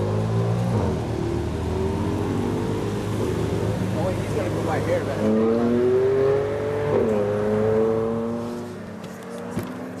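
BMW M4's twin-turbo straight-six accelerating away, its pitch rising with an upshift about seven seconds in, then fading as the car drives off.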